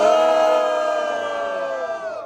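A long, high-pitched cheering yell from the audience, a voice held steady for about two seconds after a rising start and falling away at the end.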